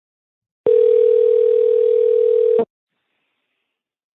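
Telephone ringback tone on an outgoing call: one steady two-second ring heard over the phone line while the call waits to be answered.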